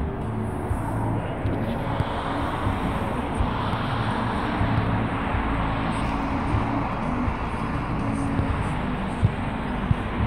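Steady engine and tyre noise of a Jeep rolling slowly along a highway shoulder, with the even hiss of road traffic.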